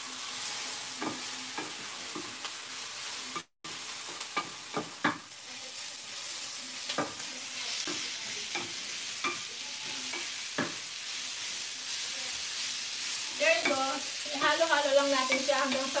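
Sliced onions sizzling in oil in a stainless steel pan as they are stirred with a wooden spoon, the spoon knocking and scraping against the pan every second or so over a steady hiss of frying.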